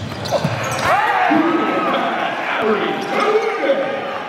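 Live basketball game in an indoor gym. Sneakers squeak on the hardwood court in short arching chirps, a basketball bounces, and crowd voices run underneath.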